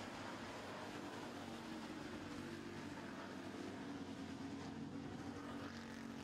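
Several dirt-track street stock race cars running at racing speed, their engines a steady, even drone of overlapping engine notes.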